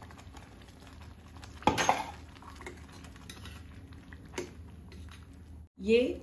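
Stainless steel utensils clinking against a steel cooking pot: a sharp double clink about two seconds in and a lighter knock later, as a steel mixer jar is emptied of blended curd into the pot of dal over a low steady kitchen hum.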